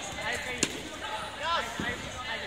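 A sharp smack of an air-filled sports chanbara short sword striking an opponent, once, about half a second in, a scoring hit. Shouts and voices echo around the gymnasium throughout.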